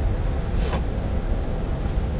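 Steady low rumble of background noise, with one brief sharp sound about three-quarters of a second in.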